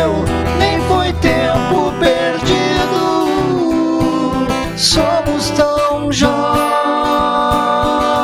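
Acoustic guitar accompanying two men singing a slow ballad live, with gliding sung notes in the first half and a long held note from about six seconds in.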